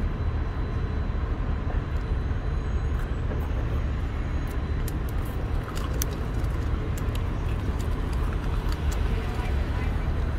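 Steady low outdoor rumble of road traffic, with a few faint sharp clicks about six to seven seconds in.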